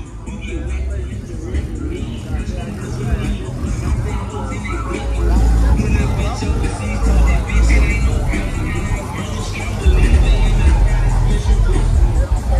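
Bass-heavy music playing loudly from car sound systems. The deep bass swells strongest about five seconds in and again near the end, with people talking over it.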